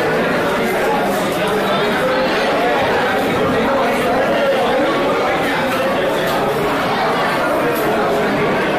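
Many people talking at once in a large hall: a steady hubbub of overlapping voices with no single speaker standing out.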